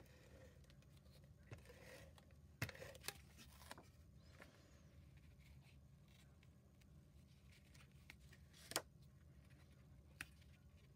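Near silence: faint sounds of cardstock being handled on a craft desk, with a few light clicks or taps, the loudest near the end.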